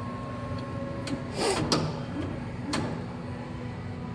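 Phone-recycling kiosk running a device evaluation: a steady machine hum, with a short mechanical whirring scrape and a click about a second and a half in and another click near three seconds.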